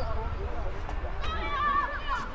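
A high-pitched, wavering shout from a voice on the football pitch near the end, over a steady low rumble.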